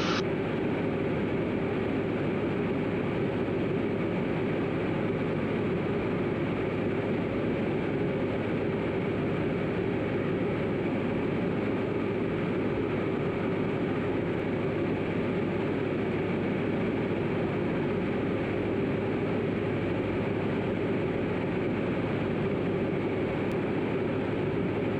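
Diamond DA40 single-engine piston aircraft in cruise, its engine and propeller droning steadily in the cockpit with an even low hum and no change in pitch or level.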